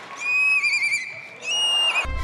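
A young girl imitating a horse's whinny with her voice: two high, quavering whinny calls, the second starting about one and a half seconds in.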